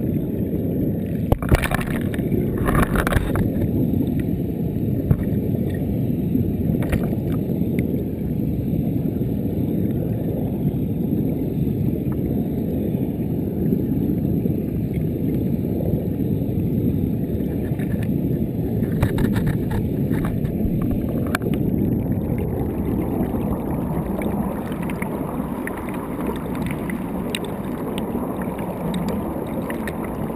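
Muffled rushing and bubbling of water heard by a submerged camera, a steady low noise, with a few sharp knocks in the first few seconds and a cluster of them about twenty seconds in.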